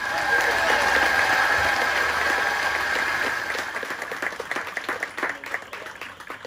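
Guests applauding with voices cheering, the applause thinning out to scattered single claps and fading over the last couple of seconds.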